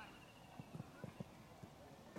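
Quiet outdoor ambience with a string of faint, soft low thuds, about eight in under two seconds, unevenly spaced.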